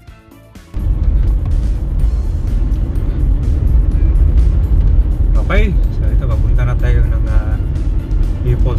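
Car driving on a road, heard from inside the cabin: a dense, steady low rumble of engine, tyres and wind that starts suddenly about a second in. A short rising-and-falling tone sounds about five and a half seconds in.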